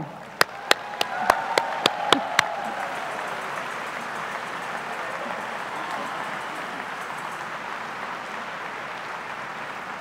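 Audience applauding. A few sharp, close claps stand out in the first couple of seconds, and the applause eases off slightly toward the end.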